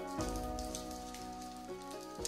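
Background music with held notes over the crinkling of a thin plastic onigiri wrapper film being handled and pulled open.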